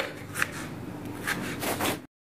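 Small kitchen knife cutting a tomato on a plastic cutting board: a few separate cutting strokes, with a cluster of quicker cuts near the end.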